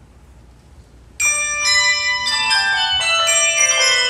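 A handbell choir starts a ragtime piece: after about a second of quiet, many handbells ring out together at once, then a quick run of struck notes, each ringing on under the next.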